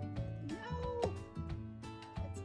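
A cat meowing once, a single call rising then dropping in pitch about half a second in, over background music with a steady beat.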